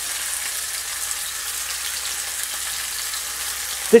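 Sausages and halved tomatoes frying in hot fat in a non-stick pan on an electric hob: a steady sizzle.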